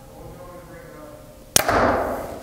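A Bowtech Core SR compound bow, set at 70 pounds, shot from full draw about one and a half seconds in: a sudden loud crack of the string and limbs releasing, then a short ringing decay.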